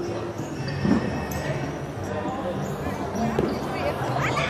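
Futsal play on a hardwood gym floor: ball contacts and shoe sounds on the court, echoing in the hall, with players' and onlookers' voices in the background.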